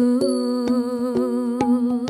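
A girl's voice singing a slow, wavering melody with vibrato, over a held low note. The notes of a Burmese bamboo xylophone (pattala), struck with padded mallets, ring out about twice a second.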